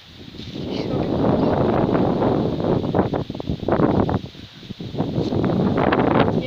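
Wind buffeting the microphone: a loud, rough rumble that builds over the first second and gusts unevenly, dipping briefly a few times.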